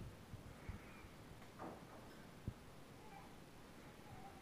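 Near silence: room tone with a few faint low thumps and one faint, short falling cry about one and a half seconds in.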